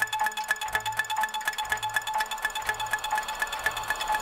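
Techno DJ set music in a breakdown: a high, plucked-sounding synth riff repeating several notes a second over a soft bass pulse, with no kick drum, and a noise swell building toward the end.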